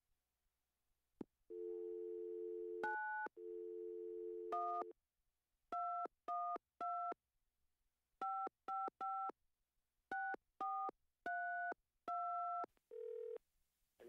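Telephone line: a click, then a steady dial tone broken by a keypress. After that, about a dozen touch-tone keypress beeps dial a number in uneven groups, ending in a brief low tone just before the call connects.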